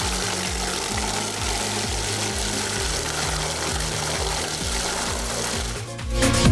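Fomac MMX-R18 meat mixer's 1,100 W electric motor running steadily, its four blades churning meatball paste in the steel bowl, with background music and a regular low beat underneath.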